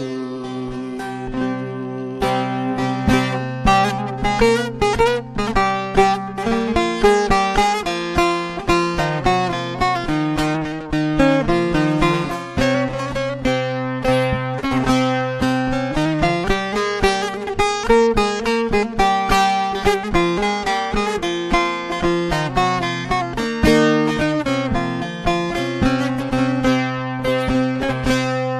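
Bağlama (Turkish long-necked saz) playing a fast instrumental interlude of a Turkish folk song: rapidly picked melody notes over a steady low drone. The playing picks up and grows louder about two seconds in.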